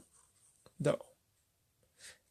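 Faint sound of a pen writing on paper, with a short spoken word about a second in.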